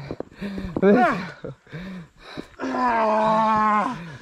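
A man's excited shouting: a few short whoops and cries, then one long, held yell over about the last second.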